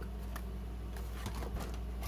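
Light rustling and a few scattered clicks from a cardboard-backed plastic blister pack being handled, over a low steady hum.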